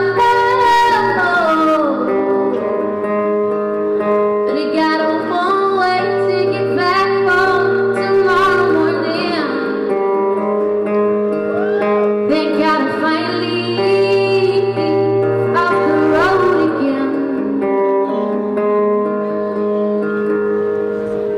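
Live music: a woman singing, holding and sliding between notes, accompanied by an acoustic guitar.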